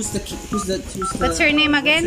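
A man and a young girl talking, the girl's voice high-pitched, with several short beeps at one steady pitch mixed in among the words.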